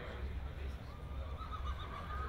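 A horse whinnying faintly: one thin, held call lasting about a second, starting a little under a second in.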